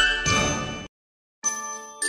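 Bell-like chimes of a short musical jingle ringing out, cut off abruptly about a second in. After a moment of silence, a new tune starts with clear, ringing glockenspiel-like notes.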